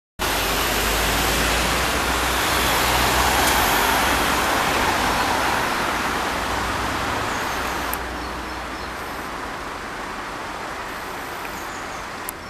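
Road traffic on a city street: a steady rush of passing cars with a low rumble, swelling about three to four seconds in and then slowly fading, with one faint click about eight seconds in.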